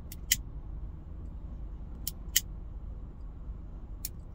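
Steady low rumble of a car interior, with sharp clicks from a lighter held to a corn cob pipe: a pair at the start and another pair about two seconds in.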